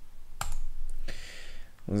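Keystrokes and clicks on a computer keyboard: one sharp click about half a second in, then a stretch of lighter, rapid tapping.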